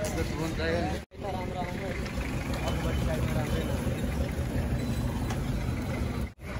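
Outdoor street ambience: people talking nearby for the first couple of seconds, then a steady low rumble of traffic. The sound briefly drops out about a second in.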